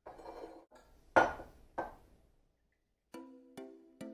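A glass bottle and glassware handled on a stone countertop: a few separate clinks and knocks, the last two striking and ringing on for about a second.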